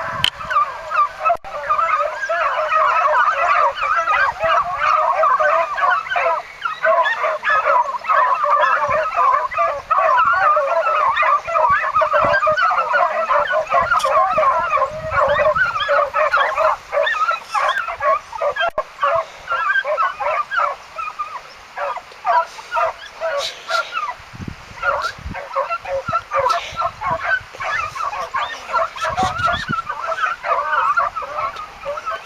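A pack of beagles in full cry, many hounds giving tongue at once in a continuous chorus of baying, as they hunt a scent. The cry is densest for the first two-thirds and turns more broken toward the end.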